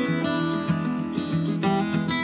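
Background music: an acoustic guitar playing a run of plucked and strummed notes.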